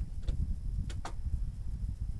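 A few small clicks and knocks as the end of a Fiamma Rafter Pro tension bar is fitted into the awning's rail, over a low rumble of wind on the microphone.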